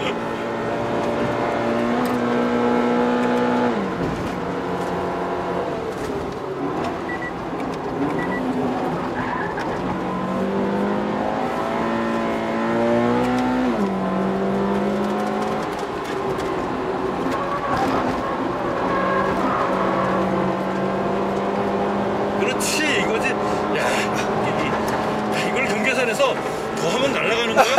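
Toyota GT86's flat-four engine heard from inside the cabin, revving hard under full load on track. Its pitch climbs and drops sharply at about 4 seconds and again at about 14 seconds as the automatic gearbox upshifts, then holds steady at high revs. A few sharp clicks come near the end.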